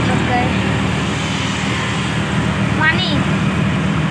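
Auto-rickshaw engine running steadily, heard from inside the passenger cabin with road and traffic noise around it.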